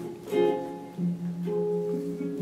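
Guitar accompaniment: a few notes plucked about half a second apart, each left to ring.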